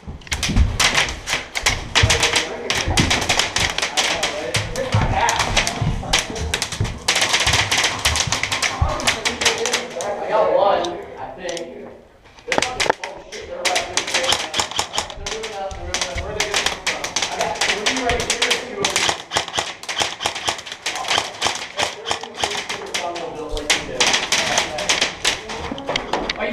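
Rapid, continuous clatter of paintball markers firing and balls hitting the building around the shooter, in long runs with a brief lull about twelve seconds in.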